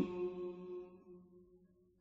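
The end of a held note of a man's Quranic recitation, fading out over about a second and a half, followed by a pause of near silence between verses.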